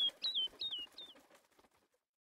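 A quick run of short bird chirps, about three a second, each a sharp upward flick followed by a falling note. They fade out about a second in.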